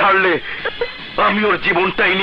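Only speech: a man talking, in short phrases with a brief pause in the middle.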